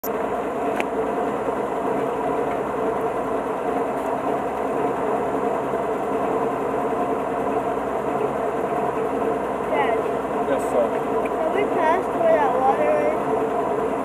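Engine of a four-wheel-drive trail vehicle running steadily at low speed while crawling along a rough dirt trail, heard from aboard the vehicle. Voices talk over it in the last few seconds.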